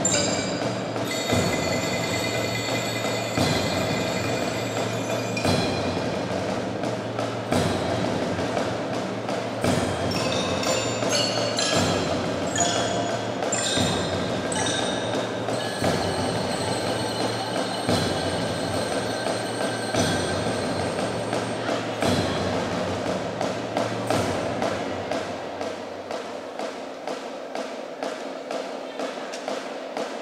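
Children's percussion ensemble playing a piece on marimbas and xylophones with ringing bell tones, and accented strikes about every two seconds. Near the end the strikes come faster and lighter, and the playing gets quieter.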